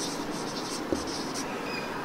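A pause between a lecturer's sentences: a steady low hiss of room and recording noise, with a light click about a second in.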